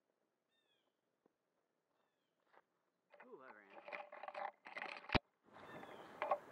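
A few faint, short falling bird chirps over near silence, then a person's voice talking from about three seconds in. A single sharp click comes a little after five seconds, followed by rustling handling noise as the drone's camera is picked up.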